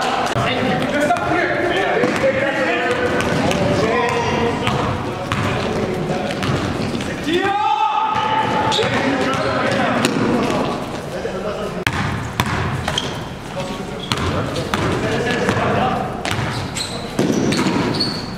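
Basketball game sound on an indoor court: the ball bouncing on the floor in short sharp thuds, amid players' voices and calls.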